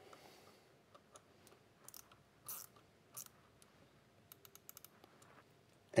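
Faint clicks and light metal taps of a torque driver tightening a Ruger 10/22's action screw, with a quick run of about eight clicks a little past the middle.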